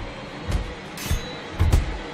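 Dramatic trailer score, broken by a few heavy punch-and-impact hits from a fist fight, the last of them a quick double blow near the end.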